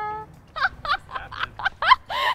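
A young woman laughing hard: the end of a drawn-out "ha", then a quick run of short, high-pitched laughing bursts, the last one rising sharply in pitch.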